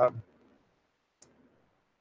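A man's voice trails off, then near silence broken by one short, faint click about a second in.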